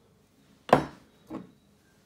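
Two short knocks of glass sauce bottles against the kitchen worktop as one bottle is set down and another taken up: a sharp knock well under a second in, then a softer one a little after a second.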